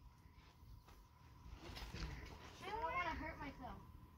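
A faint, brief voice-like call about three seconds in, its pitch rising and then falling, over low rumbling handling noise.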